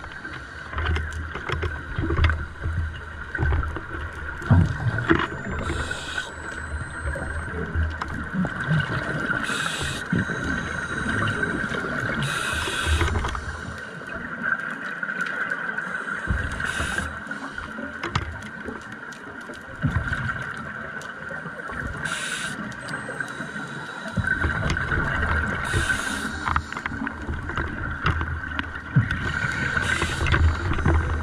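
Scuba diver breathing through a regulator underwater: a short hiss on each inhalation every few seconds, with low bubbling rumbles of exhaled air between them, over a steady hum.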